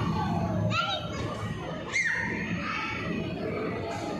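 Children's high-pitched squeals and voices over a steady background babble, echoing in a large indoor hall. Two short shrieks stand out, about a second in and again near the middle.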